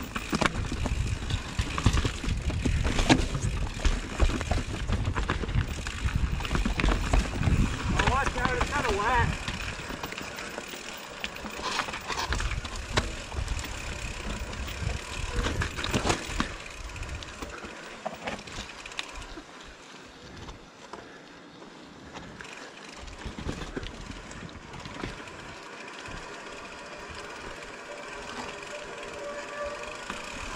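Mountain bike descending a rocky dirt trail: tyres crunching and skittering over roots and rock slabs, the bike rattling over small hits, wind on the camera microphone and a steady high freehub buzz from the coasting rear hub. The rumble is heaviest in the first ten seconds and eases on the smoother rock later.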